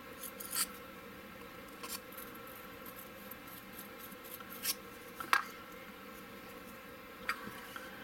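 A round needle file scraping inside a hole in a plastic model hull: a handful of short, sharp scrapes at irregular intervals as the hole is widened to take a 5 mm magnet, over a faint steady hum.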